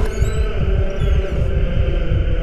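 Suspenseful film score: a low, throbbing drone under sustained held tones, with a short, high, falling swish right at the start.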